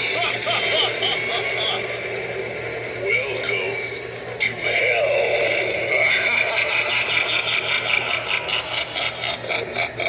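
Recorded talking voice from a Spirit Halloween Devil Door Knocker animatronic playing through its small speaker, over a steady low electrical hum.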